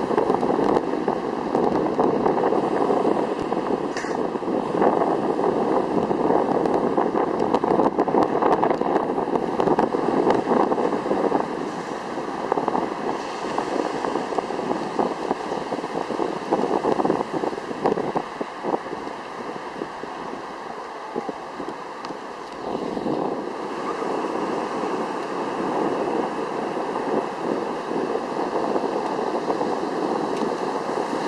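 Ocean surf washing and breaking in the shallows, with wind buffeting the microphone, steady throughout and a little quieter for a few seconds past the middle.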